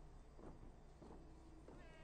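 Near silence: faint background sound in a short pause between voices.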